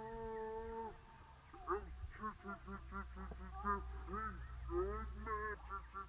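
Border collie barking rapidly and repeatedly, about four barks a second, after a long drawn-out cry in the first second: the excited barking of a dog driving hard in play or training.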